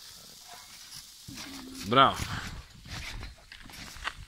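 Children bouncing on a garden trampoline: the mat gives soft, low thumps and rustling, starting a little over a second in.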